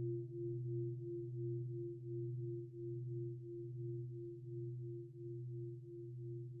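Meditation gong ringing on after a strike: a sustained low hum with a higher tone that pulses several times a second, slowly fading. It marks the crossing into the sitting practice.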